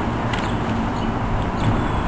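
Steady outdoor background noise with a low rumble and no distinct event.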